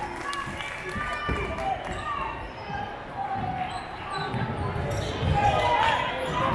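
A basketball dribbled on a hardwood gym floor, a few bounces about a second in and a run of bounces later on, with crowd voices and shouts throughout.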